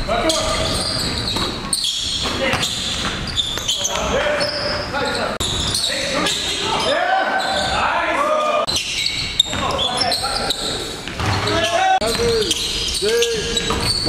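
Live basketball game sound in a gym. The ball bounces on the hardwood and sneakers squeak, with a burst of squeaks near the end, and players call out indistinctly.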